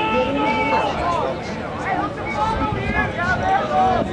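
Several raised voices shouting and calling out over one another with no clear words, from the players and onlookers around lacrosse play.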